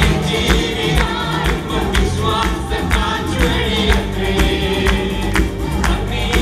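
Live gospel worship music: several voices singing together into microphones, backed by acoustic guitar and keyboard over a steady percussive beat.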